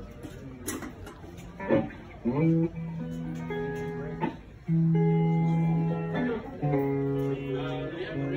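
Guitar playing a slow line of long, held notes that begins a couple of seconds in.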